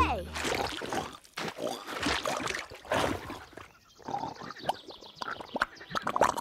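A cartoon boar grunting and oinking in a series of short irregular bursts while wallowing in a mud puddle, with wet splashing of mud.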